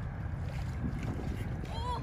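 Wind rumbling on the microphone, with the sloshing of a person wading through shallow muddy water. A short pitched call that rises and falls comes near the end.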